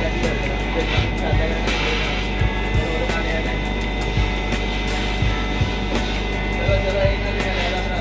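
Twin-head laser cutter running: a steady machine hum with a constant high whine, broken by short soft knocks about twice a second, at uneven spacing, as the gantry drives the heads from cut to cut.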